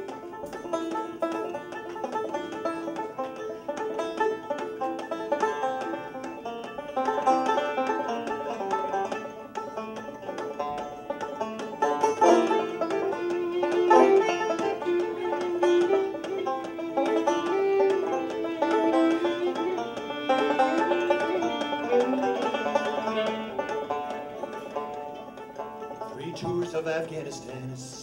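Fiddle and open-back banjo playing the instrumental opening of a folk song, the bowed fiddle melody over the banjo's steady picking. The fiddle drops out near the end, leaving the banjo.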